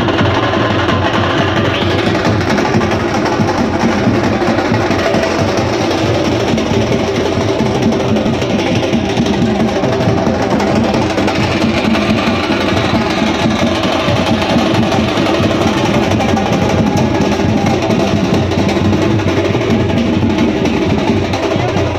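Loud music with continuous drumming that runs without a break.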